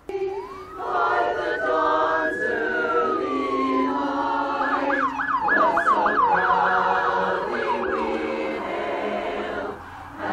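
An emergency vehicle siren winds up into a long wail that falls away, then switches to a fast yelp of about three sweeps a second, while a choir sings.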